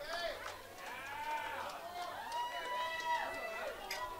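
Several people calling out in long, drawn-out hollers and whoops that overlap, their pitch arching up and down; the longest call is held steady for about a second and a half near the middle.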